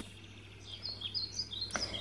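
Faint bird chirps: a quick string of short, high notes starting about half a second in, over a faint low hum.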